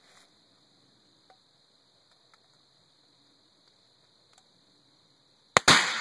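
A single shot from a Thompson/Center .50 calibre muzzleloader, heard as a sharp crack and then, a split second later, the loud main blast trailing off, about five and a half seconds in.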